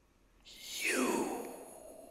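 An electronically altered human voice gives a long breathy sigh that falls steadily in pitch, starting about half a second in. A second breath, rising in pitch, begins near the end.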